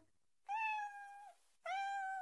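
A cartoon kitten meowing twice, two drawn-out steady meows.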